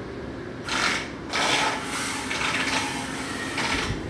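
A small machine buzzing in short spells of about a second each, with a quieter steady hum between them.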